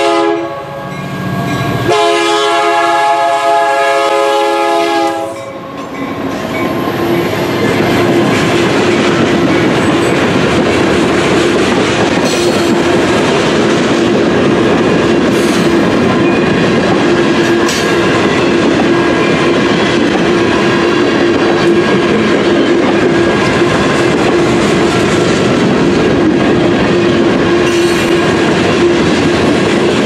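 CN diesel locomotive's chord horn: one blast cuts off just after the start and a longer one follows about two seconds in, lasting about three seconds. Then a loaded freight train rolls steadily through the grade crossing, wheels clicking and clunking now and then over the rail joints.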